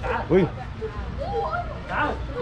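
Three short pitched animal calls, the middle one rising in pitch.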